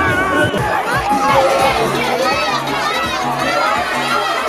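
A party crowd cheering and shouting, many voices at once. From about two seconds in, a music bass line pulses underneath.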